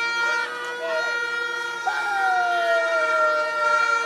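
A vehicle horn held down continuously, a steady two-note chord, with people shouting over it; one long shout falls in pitch through the second half.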